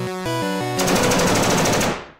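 Upbeat game-style music, then less than a second in a rapid burst of automatic rifle fire, about ten shots a second, louder than the music, which stops abruptly at the end.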